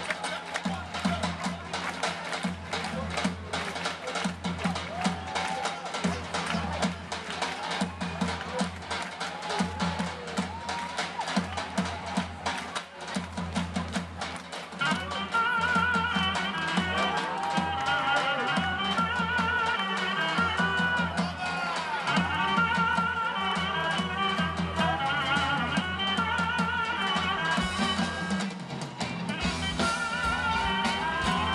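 Live band playing Turkish-style dance music. A davul and a drum kit keep a fast, driving beat. About halfway through, the full band comes in louder, with a wavering, ornamented melody over the drums.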